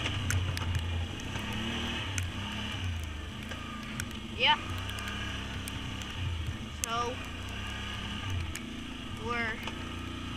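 Can-Am Outlander ATV engine running under way on a snowy trail, its note swelling and easing as the throttle changes. A few short rising squeals cut in over it, the loudest about four and a half seconds in.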